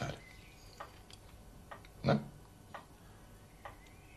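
Forks tapping and scraping on dinner plates during a meal: a few light, scattered clicks.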